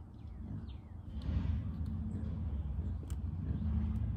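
Outdoor background rumble, low and steady, growing a little about a second in, with a faint bird chirp near the start and a single soft click about three seconds in.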